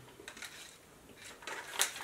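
Small snack wrapper being handled and opened, giving light scattered crinkles with a few sharper crackles in the second half.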